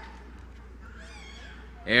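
Quiet hall room tone with a steady low hum. About a second in, a faint, high-pitched call from a distant voice bends up and down briefly.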